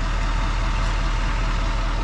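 Duramax turbo-diesel V8 of a 2020 GMC Sierra 3500 Denali idling steadily, with little exhaust note: mostly engine noise.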